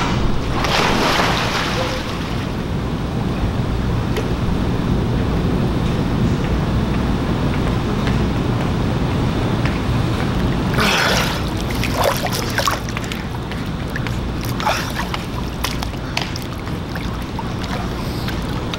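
Wind buffeting the microphone over a steady rumble, with pool water splashing and lapping; a louder splash comes around the middle.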